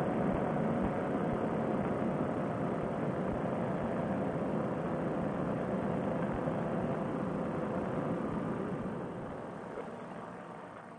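A paramotor trike's engine and propeller running steadily in flight, a constant drone mixed with wind rush on the microphone, easing down in level near the end.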